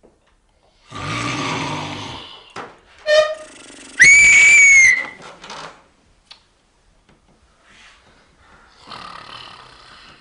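A man snoring loudly, then a sharp steady whistle held for about a second: the whistle is meant to make him stop snoring. A fainter snore comes back near the end.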